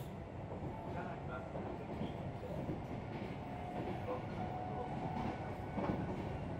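Steady running rumble of the Kintetsu Blue Symphony electric train heard from inside the passenger car as it travels along the line.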